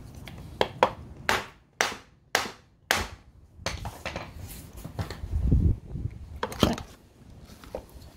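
Nylon hammer tapping a motorcycle engine mount bracket, kickstand attached, to knock it off its dowel pins. About six sharp taps come in quick succession over the first three seconds, then a couple of duller knocks as the bracket works loose.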